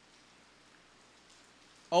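Faint steady hiss of room tone during a pause, then a man's speaking voice comes back in near the end.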